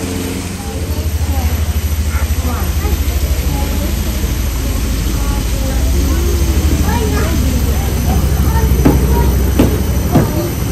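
Indistinct chatter of children and other visitors over a steady, fluttering low rumble, with two sharp clicks near the end.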